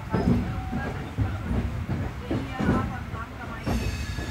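Moving LHB passenger coach heard at an open window: a steady rumble of wheels on the rails, broken by a few irregular sharp clacks as the wheels cross the track.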